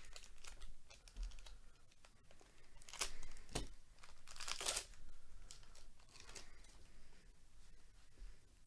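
A 2022 Panini Prizm baseball card pack's wrapper being torn open and crinkled by hand, in several short bursts of tearing and crackling. The loudest come about three seconds in and again near five seconds.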